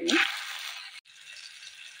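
Ginger paste (sambal halia) sizzling in hot oil as it is spooned into a frying pan with crushed garlic. The sizzle is loudest as the paste goes in, then dies down, cutting out briefly about halfway.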